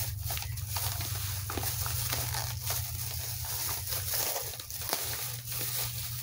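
Thin plastic shopping bag rustling and crinkling in irregular crackles as hands dig items out of it, over a steady low hum.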